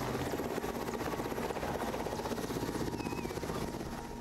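Helicopter flying overhead, its rotor chopping fast and evenly at a steady level.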